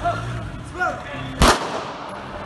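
A single pistol shot from a police officer's handgun, sharp and loud, about one and a half seconds in, followed by a short echo. Before it come short shouted calls.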